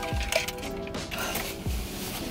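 Mechanical clicking and a couple of dull thumps from things being handled inside a car, with faint background music.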